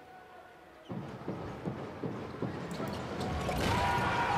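A basketball being dribbled on a hardwood arena court, a bounce roughly every third of a second starting about a second in, over arena crowd noise that swells near the end.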